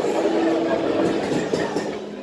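Indistinct murmur of voices and general din of a crowded room, with a steady hum for about the first second. It thins out toward the end.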